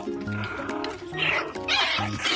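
Background music with a steady beat and repeating notes. About a second in and again near the end come two short, rough bursts of noise that are louder than the music.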